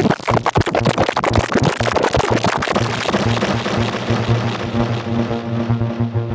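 Synthesizer tone run through the Aqusmatiq Audio Dedalus granular delay plugin: a dense, fast stutter of granulated delay repeats over a low note, thinning after about three seconds into a steady held tone as the top end fades.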